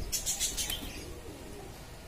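Caged birds in a chicken-wire aviary calling: a quick cluster of high chirps in the first second, over low cooing.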